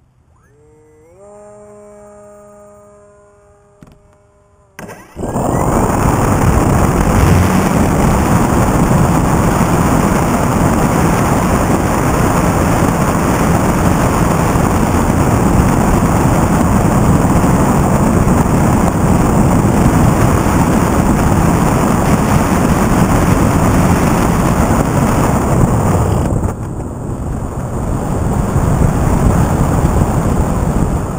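Model airplane motor and propeller heard from a camera on the plane: a quiet whine that rises in pitch about a second in and holds at low throttle, then at about five seconds a sudden jump to a loud, steady rush of motor, propeller and wind as the plane takes off and climbs. Near the end the throttle eases and the rush drops a little.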